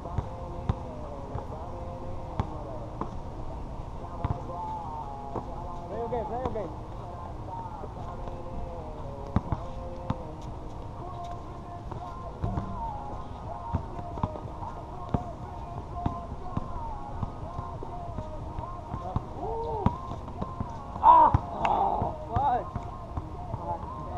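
A basketball bouncing on an outdoor hard court in a pickup game: scattered sharp thuds of the ball, with players' voices calling out in the background and a louder burst of shouting near the end.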